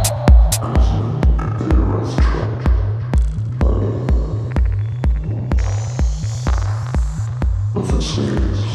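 Techno track with a steady four-on-the-floor kick drum and bass at about two beats a second, under ticking percussion and hazy synth textures. The loud bright percussion drops out about half a second in, leaving the kick and thinner clicks.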